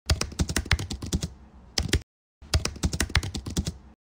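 Typing on a computer keyboard: quick runs of sharp keystrokes, with a short break about halfway through.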